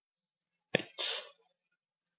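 A single short burst of breath from a person about a second in: a sharp onset followed by a brief hiss, like a stifled sneeze.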